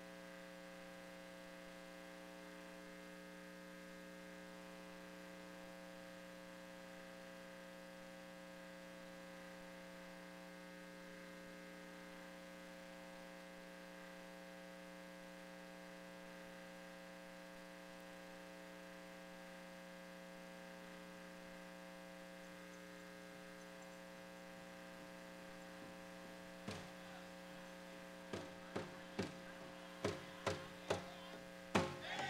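Steady electrical mains hum, with several fixed tones stacked on it. Near the end a powwow drum is struck four times, the last three about half a second apart: the start of a drum song.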